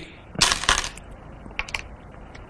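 Go stones clicking and clattering as they are handled on the board: a quick cluster of clacks about half a second in, then a couple of lighter clicks near the end.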